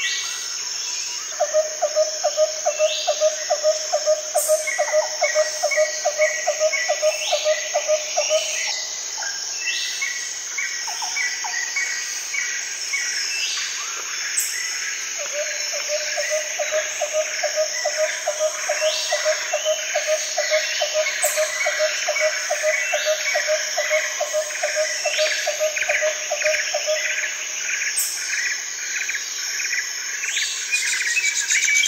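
Nature ambience of birds chirping and calling over a steady, high insect drone. A rapid pulsing call, about five pulses a second, runs for several seconds twice, about a second in and again from about the middle.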